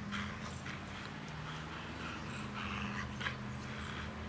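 Airedale terrier tugging hard at a stuck stick held in her jaws: a run of short, irregular huffing and rustling noises from her breath and the twiggy branch.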